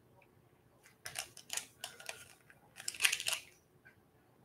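A pack of buttons being handled: a few clusters of short crinkles and clicks, the first about a second in and the last ending about three and a half seconds in.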